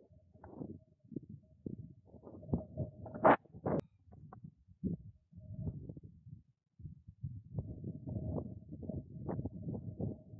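Wind buffeting the microphone in irregular low rumbles and thumps, with a faint steady whine that comes and goes and a sharper knock about three seconds in.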